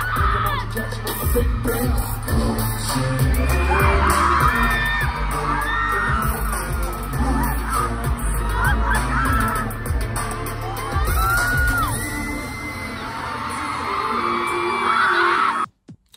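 Live K-pop concert sound recorded from within the crowd: loud, bass-heavy music with singing and crowd noise. It cuts off suddenly near the end.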